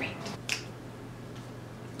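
A single short, sharp click about half a second in, over a low steady hum.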